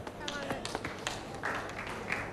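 Faint background voices with scattered light taps and clicks.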